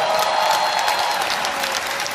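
A large indoor audience applauding steadily.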